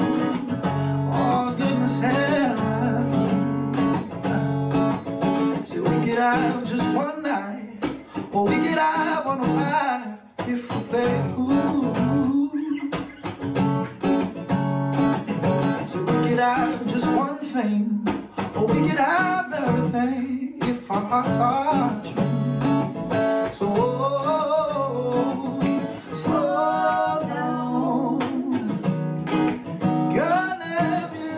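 A man singing a love song, accompanied by a strummed acoustic guitar.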